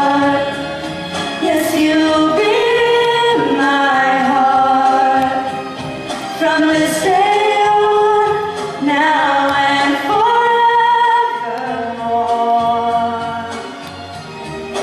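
Two young women singing a slow ballad duet in harmony into microphones, in long held notes phrased every few seconds.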